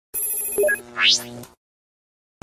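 Short electronic logo jingle: a bright ringing chime, then a tone sweeping upward about a second in, cutting off abruptly at about a second and a half.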